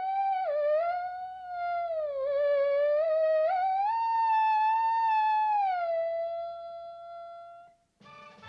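A theremin playing one wavering, gliding tone that slides up and down with a few quick jumps in pitch, rising higher about four seconds in and falling back near six seconds, then holding steady and fading out just before the end.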